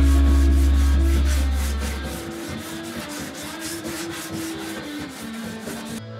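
Hand sanding a pine countertop's rounded edge with sandpaper: quick, regular scratchy strokes, about four a second. Background music fades out over the first two seconds.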